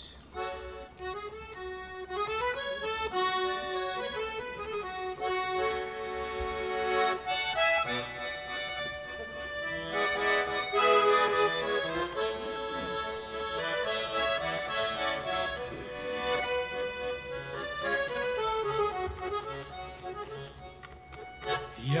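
Russian garmon (button accordion) playing a solo instrumental introduction to a folk song: a melody over chords that changes note every fraction of a second. A man's singing voice comes in at the very end.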